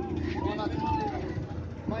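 People talking, with a steady low drone underneath.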